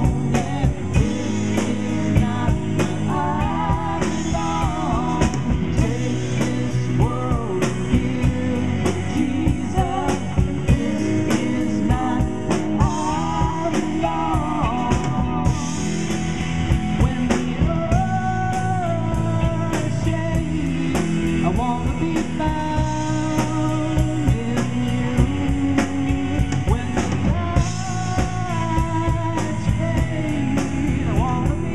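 Live band playing a rock-style song: drum kit keeping a steady beat under acoustic guitars and bass guitar, with singing.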